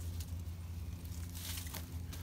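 Soft rustling of leaves and twine as twine is wrapped around a young avocado tree and its metal stake, with a few short scuffs over a steady low hum.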